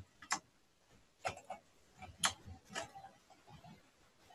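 A few faint, irregular computer mouse clicks.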